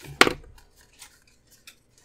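A sticker sheet picked up and handled on a desk: one sharp tap about a quarter second in, then a few faint light ticks.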